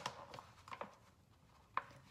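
A metal spoon scraping and tapping inside a nearly empty packet of powder, a few faint short scrapes with a sharper one near the end.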